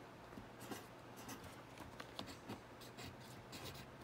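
Pencil writing on paper: faint, short scratching strokes as digits are crossed out and new numbers written.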